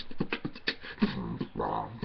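Solo beatboxing by a man: rapid percussive mouth clicks and hits, several a second, mixed with short pitched vocal tones.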